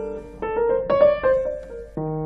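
Grand piano played solo. A held chord dies away, then a melodic line of single notes is struck one after another, a few tenths of a second apart.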